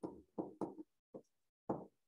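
A pen stylus knocking against a writing tablet during handwriting: about five short, irregularly spaced knocks.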